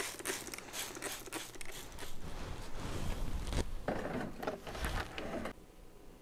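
Hand-pump plastic spray bottle misting water in quick repeated squirts, about four a second. After about two seconds it gives way to fainter rustling handling noise with a few dull knocks.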